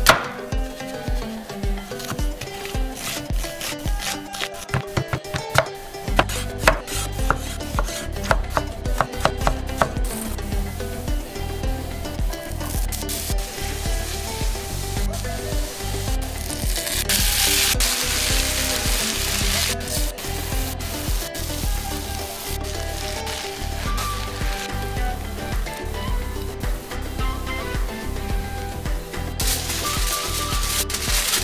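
A knife chopping a red onion on a wooden cutting board, in quick strikes over the first ten seconds or so. Then chopped onion sizzling in oil in a frying pan, the hiss loudest in the middle, all over background music with a steady bass beat.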